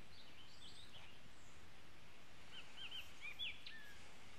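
Birds chirping faintly over a steady outdoor background hiss: a few scattered chirps in the first second, then a quicker run of short chirps in the last second and a half.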